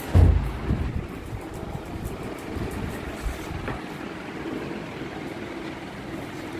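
Handling noise from a phone microphone being carried and moved about: a low rumble with a heavy bump just after the start, settling into a faint steady hiss.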